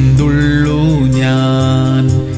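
A man singing a Malayalam Christian worship song, holding long notes that bend in pitch, with musical accompaniment.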